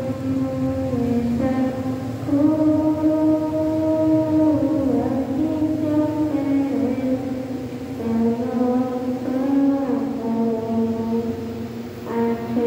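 A slow religious hymn sung by a group of voices, in long held notes that step in pitch from phrase to phrase.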